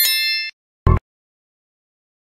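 A bright bell-like ding sound effect, struck as the animated notification bell is clicked, ringing with several high steady tones and dying away within about half a second. A second short sound follows about a second in.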